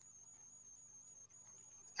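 Near silence, with only a faint steady high-pitched tone under it.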